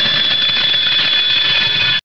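A loud, steady, shrill ringing like an alarm bell, which cuts off suddenly at the end.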